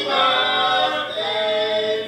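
Several voices singing together, holding long notes, with a change of note about a second in.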